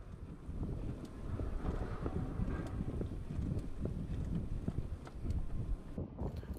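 Wind buffeting the microphone of a bicycle-ridden camera, a gusting low rumble mixed with the tyres running over brick paving. It drops away near the end.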